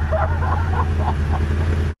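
Motorcycle engine idling steadily, cutting off suddenly near the end.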